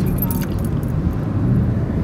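Steady low rumble of road and wind noise from a moving car, heard from inside it.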